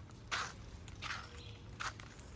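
Footsteps on a paved asphalt driveway: three steps, a little under a second apart.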